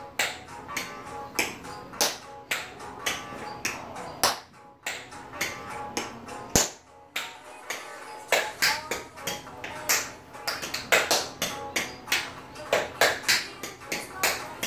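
Tap shoes striking a tile floor in quick, uneven runs of sharp taps with a few short pauses, over recorded pop-jazz music playing.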